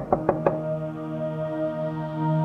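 Four quick knocks on a door in the first half-second, over soft, sustained background score music.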